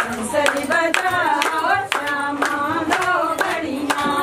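Women singing a Himachali Pahari Krishna bhajan at a kirtan, keeping time with rhythmic hand clapping, about two claps a second.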